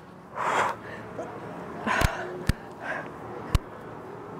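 A person's heavy breathing during a core exercise: short forceful exhales, the strongest about half a second in and fainter ones later. Three sharp clicks come about two, two and a half and three and a half seconds in.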